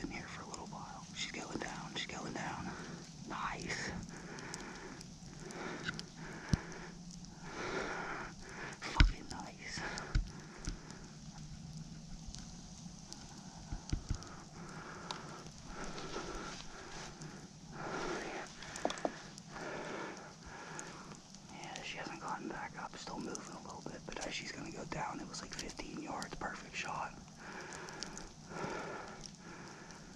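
A man whispering close to the microphone in short, soft phrases, with a few sharp knocks from handling, the loudest about a third of the way in.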